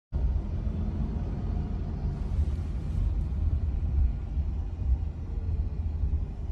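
Steady low rumble of road noise inside the cabin of a moving Chevrolet Bolt electric car, with no engine sound.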